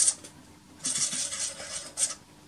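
A CD rattling as it spins up in a Naim NAC D3 CD player, with about a second of rattling noise from about a second in. The disc is slipping on the turntable: its centre hole is too large and the player's original magnetic puck does not clamp it firmly enough.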